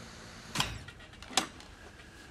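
A television's power switch clicked off and then on again, in a bid to reset a faulty picture: a duller click with a low thud about half a second in, then a sharp click a little under a second later.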